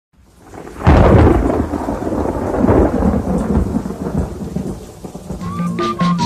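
Thunder with rain: a loud crack about a second in that rolls and slowly fades over the next few seconds against steady rain. Music with a melody and a rattle comes in near the end.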